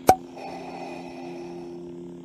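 A sharp click, then a steady low electric hum of a few fixed tones: a lightsaber sound effect.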